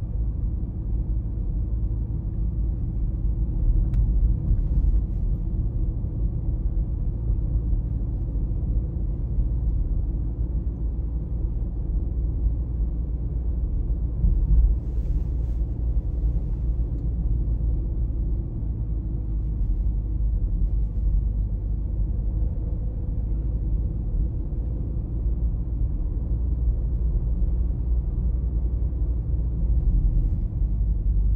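Steady low rumble of a car driving, heard from inside the cabin: engine and tyre noise. There is a brief louder swell about halfway through.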